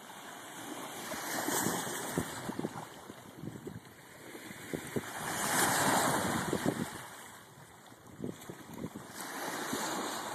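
Very small Lake Michigan surf washing in around slabs of shore ice, two waves swelling up and falling back, with many short splashy crackles as the water slaps against the ice and sand.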